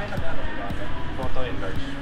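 Indistinct voices in a busy store, over background music, with a regular low thumping about three times a second.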